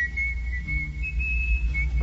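A single high whistling tone held steady, stepping briefly higher about a second in, over a low hum.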